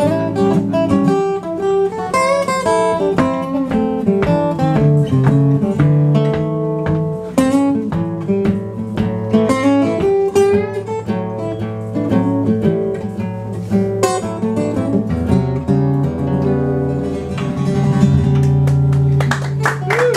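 Two acoustic guitars playing an instrumental passage, a busy run of quick picked notes over chords. About three-quarters of the way through, the low notes settle into a long held chord.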